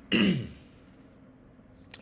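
A man clearing his throat once, a short rough burst near the start, into a fist held at his mouth.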